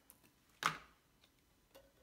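Handheld scissors making one sharp click about two-thirds of a second in, followed by a fainter tick later on.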